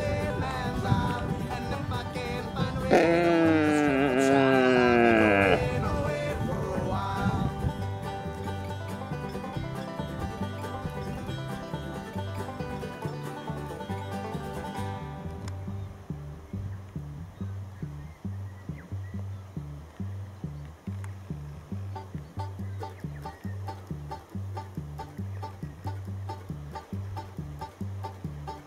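A red stag roars once about three seconds in, one long call falling in pitch and lasting about two and a half seconds. Background country-style music with a steady beat plays throughout.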